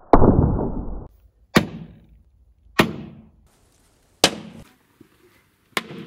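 Balls striking the tempered glass front of a TV panel: five sharp hits at irregular gaps of about a second or more. The first is the loudest, with a long fading tail that breaks off suddenly; the later hits are shorter. The glass takes the hits without breaking.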